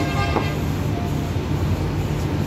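A steady low mechanical hum, with a single short knock about a third of a second in.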